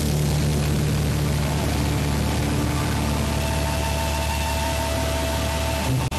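Live metal band's distorted electric guitars and bass holding a low droning note, with a dense noisy wash over it. A few thin steady high tones join about halfway through.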